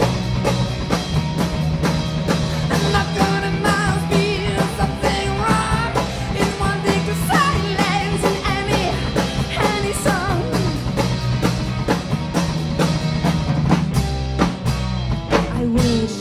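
Live rock band playing: a drum kit keeps a steady beat under electric guitar and bass guitar, with a woman singing into the microphone.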